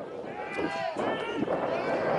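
Men's voices calling out during a rugby scrum, in short speech-like bursts about half a second and a second and a half in, over steady outdoor background noise.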